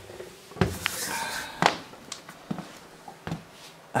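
An interior door pushed open by hand, with a short swish about a second in and a few sharp knocks spread through the next seconds as he walks through.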